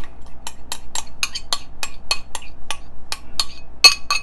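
A spoon scraping and clinking against a small glass bowl as diced onion is pushed out of it, a quick run of light clicks about five a second.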